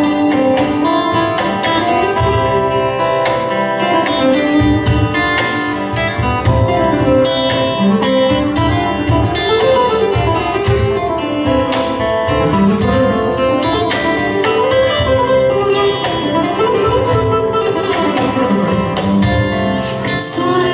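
Instrumental break of a folk song on two acoustic guitars: a steel-string guitar strumming chords while a nylon-string electro-acoustic guitar plays a melodic lead in runs that rise and fall.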